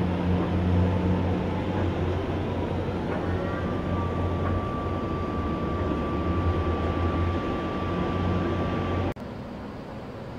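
Steady low drone of a boat's diesel engine over a broad hiss, with a thin steady high tone joining about three and a half seconds in. It cuts off abruptly about nine seconds in, leaving a quieter hiss.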